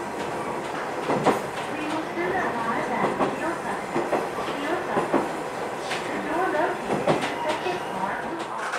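A diesel railcar running along jointed track, heard from the driver's cab: steady wheel and running noise with a rail-joint click about once a second.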